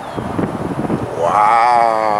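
A man's low, drawn-out vocal sound, wordless, starting about a second in and held for over a second with a slightly wavering pitch.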